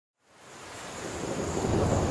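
Thunderstorm effect opening a hardstyle track: a hiss of rain with a low rumble of thunder. It fades in from silence about a quarter second in and swells steadily louder.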